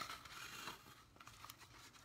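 Faint rustling and small ticks of washi tape being wrapped around a cardboard tube.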